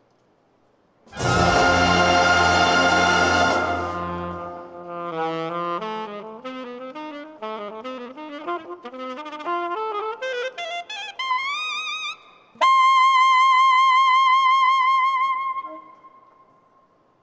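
A wind band sounds a loud held chord. Then an alto saxophone plays alone, climbing note by note to a long high note held with vibrato.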